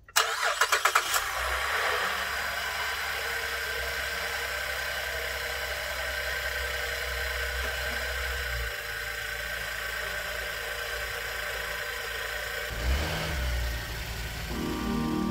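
Car engine cranking for about a second and catching, then idling steadily.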